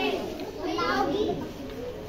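A group of children chattering and calling out, their voices overlapping.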